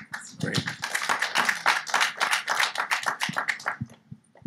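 Hands clapping: a quick, dense run of sharp claps lasting about three and a half seconds and thinning out near the end.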